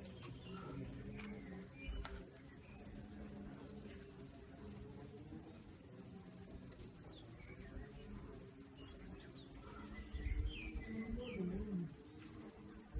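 Small birds chirping short rising notes, most of them near the end, over a steady high insect buzz. A faint low voice wavers underneath, and a few dull thumps come near the end.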